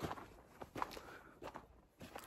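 Faint footsteps of a person walking, a few steps roughly half a second apart.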